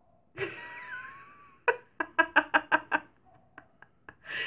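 A woman laughing: first a drawn-out breathy sound, then a quick run of "ha" bursts about seven a second that fades into a few small catches of breath.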